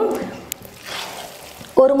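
Nearly dry, par-cooked rice rustling softly as a ladle turns it in a stainless steel pot, with a single light click about half a second in.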